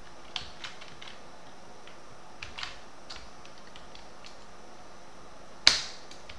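Computer keyboard keys typed one by one: scattered soft clicks, with one sharp, much louder click near the end.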